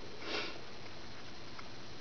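A single short sniff about a quarter second in, over a steady background hiss.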